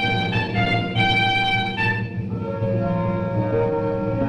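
Orchestral background music led by violins playing a moving melody. About two seconds in the higher notes drop away, leaving quieter held string notes.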